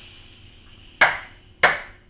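Air-operated lid clamps on a hydrostatic test water jacket closing. A hiss of air fades out, then two sharp clunks come about two-thirds of a second apart as the clamps seat on the lid.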